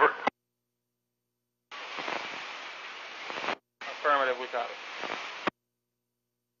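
VHF marine radio receiver opening twice on keyed transmissions: about two seconds of static hiss, a short break, then a second burst of hiss with a brief unintelligible voice fragment in it, each cut off abruptly.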